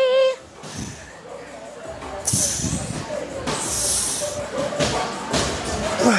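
A few short, sharp hissing breaths blown out during seated cable row reps, over faint background voices.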